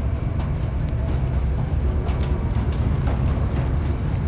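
Camaro ZL1 and BMW M5 V8 engines idling side by side at the drag strip start line: a steady low rumble.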